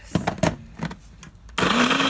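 A few light knocks, then about one and a half seconds in a blender motor starts up loud with a steady whine, grinding cooked chiles, tomatoes and garlic into salsa.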